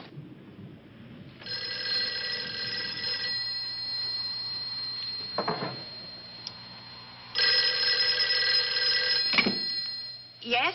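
Telephone bell ringing twice, each ring about two seconds long, with about four seconds between them.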